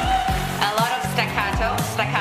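High, operatic male singing over an electronic dance beat, with a kick drum about twice a second. A held note with wide vibrato breaks, about half a second in, into quick darting vocal runs.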